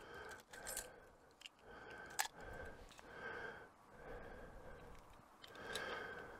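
Faint handling of fishing lures and tackle: soft rustling with one sharp click about two seconds in.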